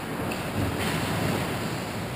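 Steady rushing noise of an ice rink during play, with a brief swell just past half a second in.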